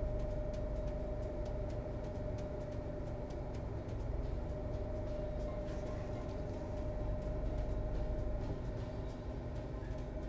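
A steady mechanical hum holding a constant tone, with faint ticks scattered through it.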